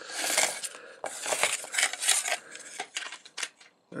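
Hard plastic action-figure parts clicking, rattling and scraping as they are handled, with a wing being worked off and onto its peg. There are irregular scrapes through the first half and a few sharp clicks near the end.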